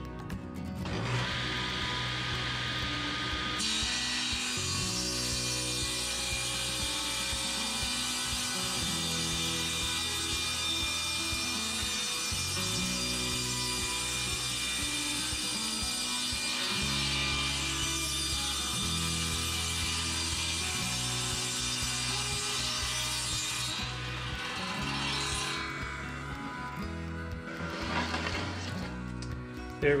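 Table saw ripping a two-by-four lengthwise with its blade tilted to five degrees. The saw starts about a second in and cuts steadily for some twenty seconds, then falls away as the cut ends.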